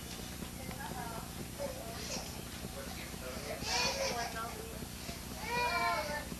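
Indistinct high-pitched voices of people in a room, with two louder outbursts, one about three and a half seconds in and one near the end, over a steady low hum.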